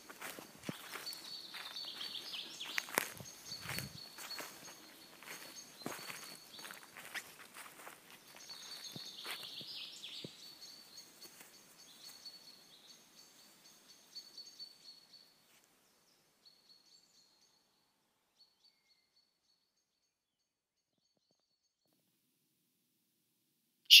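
Ambient outdoor field recording of footsteps, irregular short knocks, under a thin steady high-pitched tone. It fades out about fifteen seconds in, leaving near silence.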